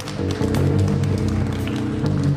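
Live heavy band playing: a low, loud chord struck at the start and held, with drum hits over it.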